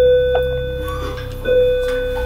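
Two struck bell-like notes at the same pitch, about a second and a half apart, each ringing on, as part of the film's music.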